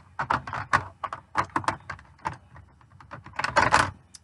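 Quick irregular clicks and clatter of makeup brushes and cases being rummaged through, with a denser, louder burst of rattling near the end.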